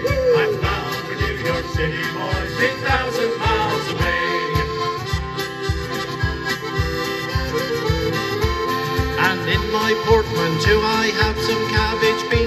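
Piano accordion playing a sea-shanty-style folk tune in an instrumental break, with an acoustic guitar strumming along, over a steady low beat of about two to three strokes a second.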